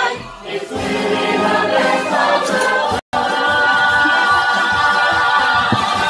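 Several voices singing, with a brief complete dropout of the sound about halfway through, followed by a long wavering held note.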